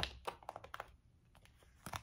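Faint quick clicks and taps of cards being handled on a table, a run of them in the first second and a couple more near the end.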